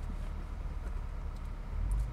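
Low, steady vehicle rumble heard from inside a car cabin, swelling louder near the end.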